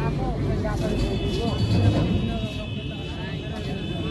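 Indistinct voices talking over a low background rumble. About a second in, a steady high-pitched tone joins them and holds.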